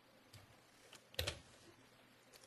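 Faint computer-keyboard keystrokes: a few separate key presses, the loudest about a second and a quarter in.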